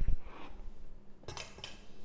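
Metal spoon clinking against a stainless steel mixing bowl and set down in a ceramic bowl: a knock at the start, then a ringing clink about a second and a half in.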